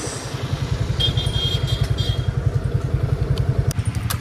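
Motorcycle engine running at low revs with a steady, even putter while the bike rolls slowly. A faint high tone sounds briefly about a second in, and a few light clicks come near the end.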